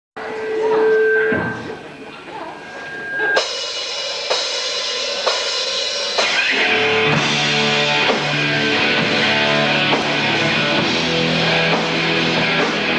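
Live rock band with electric guitars, bass and drums: a held note at the start, then loud hits together about once a second, then the full band playing a driving song with a bass line from about seven seconds in.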